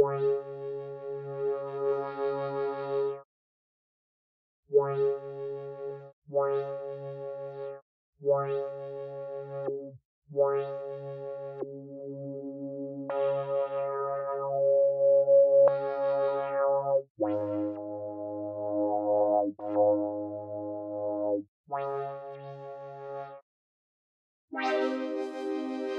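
Dawesome MYTH software synthesizer playing a series of held chords with short gaps between them, through a resonant low-pass filter whose cutoff is swept by an envelope, so each chord's brightness rises and falls as it sounds. Near the end the chords move to a lower voicing, then return.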